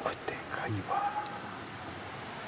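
A person's quiet, whispered voice, heard in short bits.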